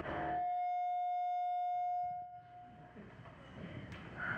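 A single held musical note with a steady pitch, sounding for about two seconds and then fading away.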